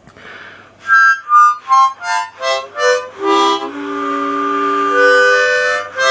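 Ten-hole diatonic harmonica in C (a Victory) played: a run of short single notes stepping down in pitch, then a long held chord. Every reed is sounding properly.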